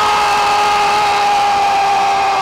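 Hockey arena goal horn sounding one long steady blast over crowd noise, the signal that the home team has scored.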